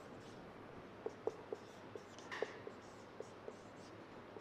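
Marker pen writing on a whiteboard: a string of faint, short squeaks from the tip as the numbers and letters are written.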